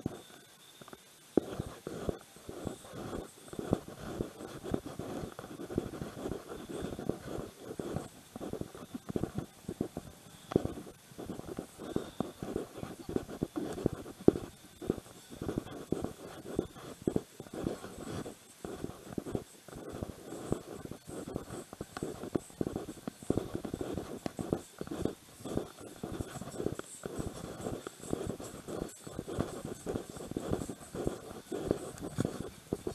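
Continuous scratchy rubbing and rustling of clothing or a bag strap against a body-worn camera's microphone as the wearer walks, after a brief quieter moment at the start.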